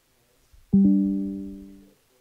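A single musical note or chord from an instrument, struck with a quick double attack about three-quarters of a second in, dying away over about a second and then stopping.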